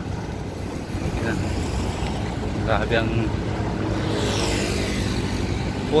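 Road traffic running steadily beside a multi-lane road, with one vehicle passing close by in the last couple of seconds.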